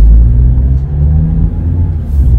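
Car running on the road, heard from inside the cabin: a steady low rumble of engine and road noise, loudest at the start.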